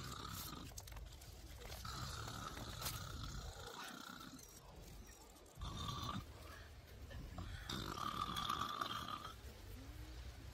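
A person snoring: long, drawn-out snores repeating about every four seconds.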